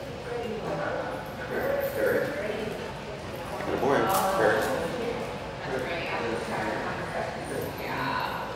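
Indistinct talking in a large tiled lobby, with footsteps and a dog's claws clicking on the tile floor as a dog walks on a leash.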